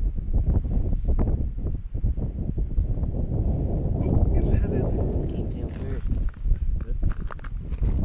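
Wind rumbling on the microphone, uneven in strength, with scattered small knocks and scuffs.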